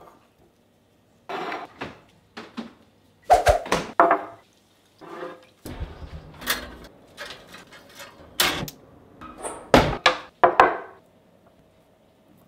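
A series of separate knocks, clunks and scrapes from handling food, a gas grill with a smoker box and a wooden board, the loudest about a third of the way in and again near the end.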